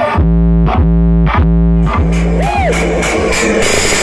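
Loud electronic music from a large outdoor sound system: sustained synthesizer chords over a very heavy deep bass, punctuated by drum hits. About halfway through the music turns denser and noisier, with swooping tones that rise and fall.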